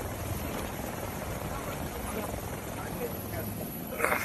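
Steady noise of a helicopter, heard from inside its cabin at the open door, with faint voices under it.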